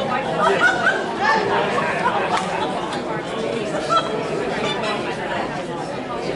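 Many people chatting at once in a large hall: an indistinct hubbub of overlapping conversations, with no single voice standing out.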